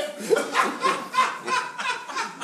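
A person laughing in short, evenly repeated bursts, about three a second.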